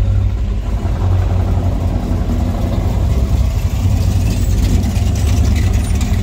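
Car engine running at low speed, heard from inside the cabin: a steady deep rumble.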